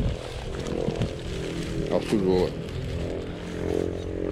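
Men's voices saying a few short, low words over a steady low background rumble.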